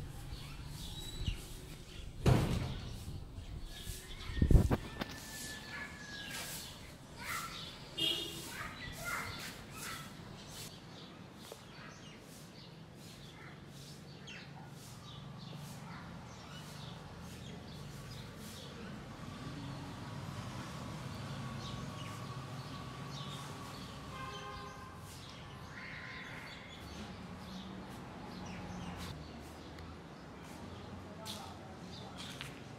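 Outdoor ambience picked up by a phone's microphone during video recording: birds chirping and scattered clicks, with two loud thumps in the first five seconds and a faint low hum underneath.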